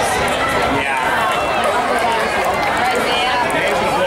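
Crowd of spectators talking, many voices overlapping without any one speaker standing out.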